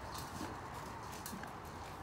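Labradoodle puppies eating dry kibble from metal bowls, heard faintly as scattered small clicks and crunches.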